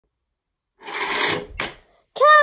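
A fingerboard's small wheels rolling on a Tech Deck halfpipe ramp for about half a second, then a single sharp clack about a second and a half in.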